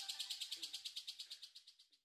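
Faint, rapid high-pitched pulsing chirp, about twelve even pulses a second, fading away within about a second and a half.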